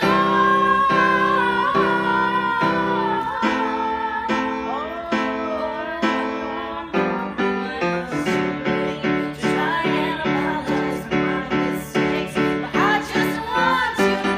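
A young woman singing a slow song into a microphone, accompanied by a grand piano playing repeated chords. About eight seconds in, the piano chords come faster and more evenly.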